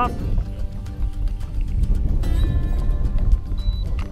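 Wind rumbling on the microphone, with background music under it; the music's steady tones grow fuller about halfway through.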